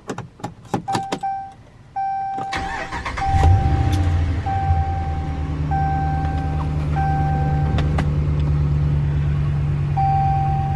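A few sharp clicks, then the pickup's engine cranks and starts about two and a half seconds in and settles into a steady idle. A dashboard warning chime beeps about once a second throughout.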